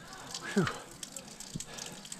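A breathless, exhausted 'whew' from a cyclist just after a long climb, falling in pitch about half a second in. Under it, the steady faint trickle of a stone fountain's spout running into its trough.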